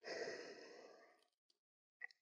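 A man's breath, a soft sigh lasting just over a second, followed by a faint click.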